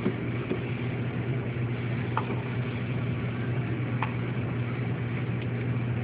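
Steady low mechanical hum with a constant noisy rush over it, unchanging throughout; two faint brief high sounds come about two and four seconds in.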